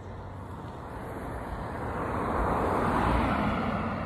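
A road vehicle passing, its noise swelling to a peak about three seconds in and then fading.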